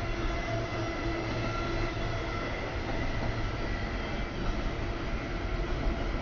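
Double-stack container freight train rolling past: a steady rumble of the cars running on the rails, with faint steady higher tones over it.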